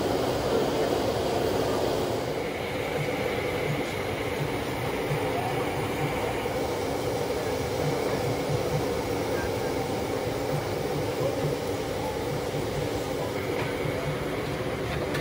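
Deep-frying: lentil fritters (daal bora) sizzling in a large karahi of hot oil over a gas burner, heard as a steady, dense rumbling hiss.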